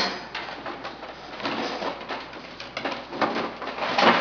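Domestic pigeons cooing in a wire cage, with scattered light rustles and knocks as a bird is handled at the cage.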